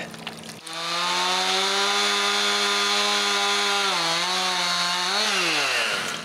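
Chainsaw running at high revs, cutting trees. It starts about half a second in with a steady high engine note, dips slightly about four seconds in, then rises briefly and drops away in pitch near the end as it slows down.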